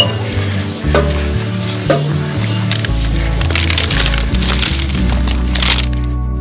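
Sharp metallic clinks, the loudest right at the start and two more about one and two seconds in, then a stretch of rattling and scraping, over background music.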